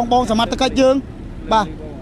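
Speech: a voice narrating, with a short pause about halfway through, over a steady low background hum.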